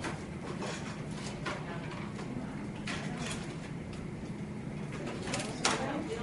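Quiet classroom room tone with a low steady hum, broken by scattered small clicks and rustles of people handling model rocket kit parts and plastic bags on plastic trays, the loudest near the end.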